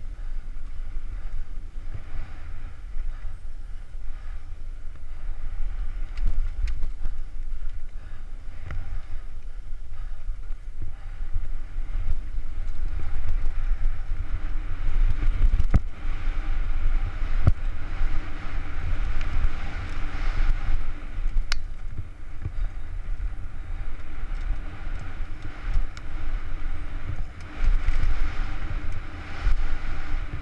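Downhill mountain bike ridden fast down a dry dirt and gravel trail, heard through a helmet camera: wind buffeting the microphone under the rolling crunch and hiss of tyres on loose dirt, which grows stronger on the faster stretches, with occasional sharp knocks and rattles as the bike hits bumps and stones.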